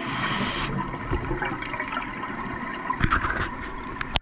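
Scuba regulator breathing underwater: a short hiss at the start, then bubbling and gurgling of exhaled air, with a brief louder burst of bubbles about three seconds in.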